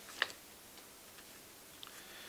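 A single sharp click about a quarter second in, then a few faint ticks over quiet room tone, from small handling noises at the table close to the microphone.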